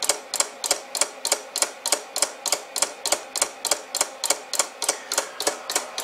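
Homemade pulse motor built from microwave oven parts, its glass turntable plate spinning on 8 volts. It clicks sharply and evenly, about five clicks a second, as its small switch fires the coil.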